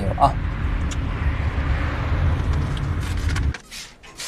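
Road and engine noise inside a moving car's cabin: a steady low rumble with a swelling whoosh around the middle, cutting off abruptly about three and a half seconds in. Near the end, one short spritz from a hand spray bottle.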